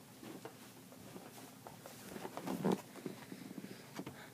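Faint handling noises: a small cardboard box being carried and handled as a person moves up close, scattered rustles and light knocks with a louder scuffle about two and a half seconds in. Under it runs a faint steady low hum.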